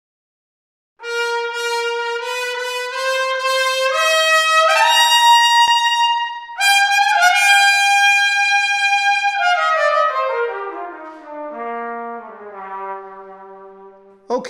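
Solo trumpet played unaccompanied, starting about a second in. It rises in steps to a long high note, holds another note, then descends note by note to a low note that fades away near the end.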